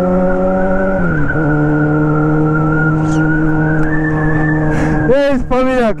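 Yamaha XJ6 inline-four motorcycle engine cruising under steady throttle, heard from the rider's seat. Its note climbs slightly, steps down in pitch about a second in, then holds steady. A man's voice starts near the end.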